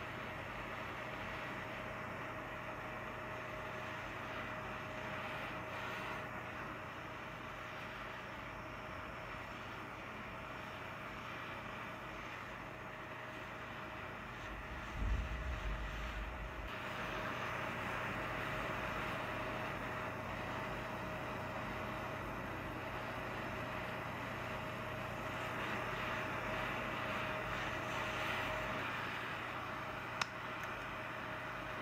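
Gas torch flame hissing steadily on a ceramic melting dish while gold and silver are melted together, with a thin steady whistle in the sound. About halfway there is a brief low knock, and after it the hiss is a little louder.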